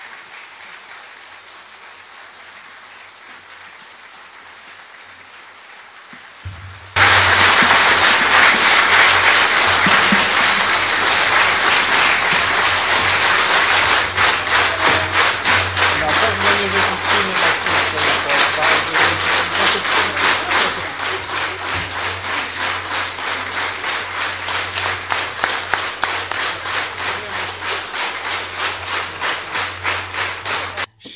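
Audience applause in a concert hall that comes in abruptly and loud about seven seconds in, after a quieter stretch. Partway through, it settles into steady rhythmic clapping in unison.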